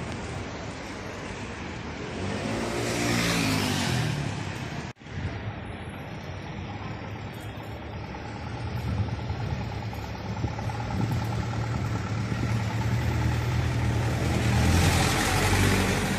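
Street traffic: a motor vehicle passes close by about three seconds in, with a brief dropout in the sound just after. A heavy vehicle's engine then runs steadily nearby, growing louder toward the end.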